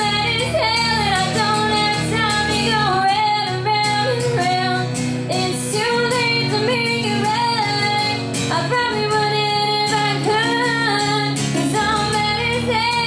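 A woman singing a slow folk melody in long, held notes, accompanying herself on a strummed acoustic guitar.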